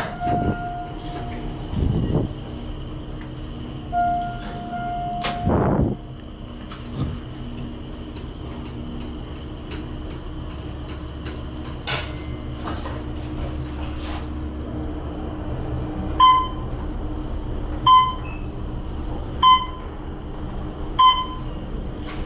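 Otis traction elevator car in service: short electronic tones, the sliding doors' operator, then the steady low hum of the car travelling. Near the end come four evenly spaced electronic beeps about a second and a half apart.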